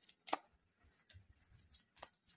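Faint taps of tarot cards being drawn from the deck and laid down on a towel, with one clearer tap about a third of a second in and a couple of softer ticks later.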